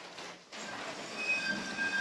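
Faint, steady high-pitched squeal over a background hiss, starting about half a second in.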